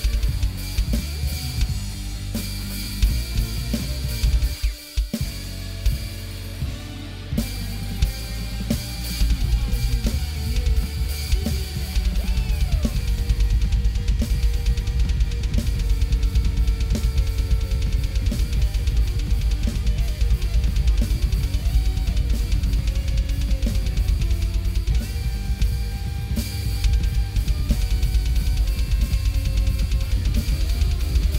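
A Roland electronic drum kit played along to a heavy psychedelic rock track, with bass drum, snare, hi-hat and cymbals. The music breaks off briefly about five seconds in. From about twelve seconds in, a rapid bass-drum pattern drives the beat.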